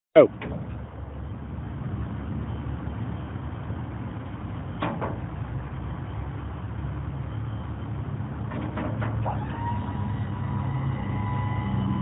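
Truck service-bed liftgate being worked: a steady low motor hum, with metal clanks near the start, at about five seconds and around nine seconds. A steady high whine joins the hum at about nine seconds.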